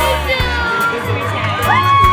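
Crowd of spectators cheering and shouting, with children's voices among them.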